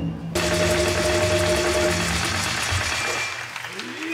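Theatre audience applauding, starting abruptly a moment in and dying away over about three seconds, under a held note from the traditional music ensemble.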